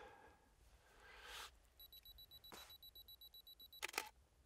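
Camera self-timer beeping faintly and rapidly, about seven short high beeps a second for some two seconds, then a click near the end as the shutter fires.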